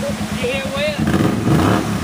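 Kawasaki Brute Force ATV's V-twin engine running as it drives through creek water, revving up and getting louder about halfway through, with water splashing around the wheels.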